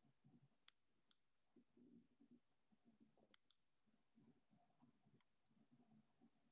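Near silence: faint room tone with a few faint clicks, coming in three close pairs.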